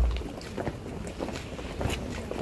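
Wind buffeting the phone's microphone in a low rumble, strongest at the start and again near the end, over light irregular footsteps on paving stones.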